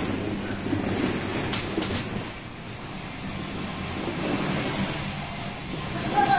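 Plastic balls in a ball pit rustling and clattering as children wade through them, with a few light clicks and a low steady hum underneath.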